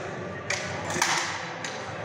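Training rapier blades clashing in sparring: three sharp contacts in about a second and a half, the middle one ringing a little longer.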